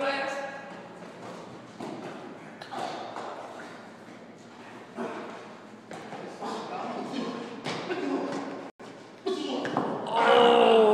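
Two people fighting, heard as scuffling and several sudden thuds, with indistinct voices of onlookers echoing in a large hall.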